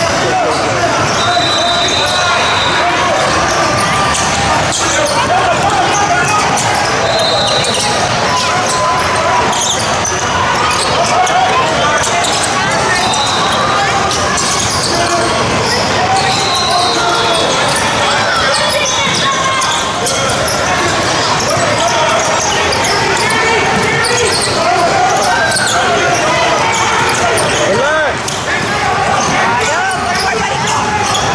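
Echoing gym sound of a youth basketball game: basketballs bouncing on the hardwood floor amid many overlapping voices of players and spectators, with a few brief high-pitched tones repeating every few seconds.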